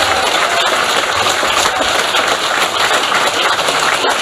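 Audience applauding: dense, steady clapping from a seated crowd.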